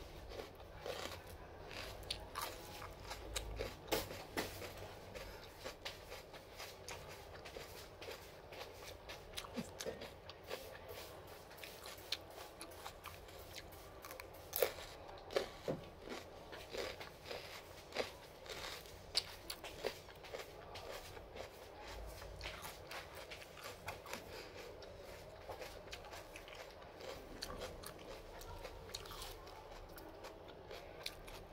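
Close-up eating sounds: a person chewing and biting pieces of dragon fruit and a crisp green vegetable, with many small irregular crunches and clicks.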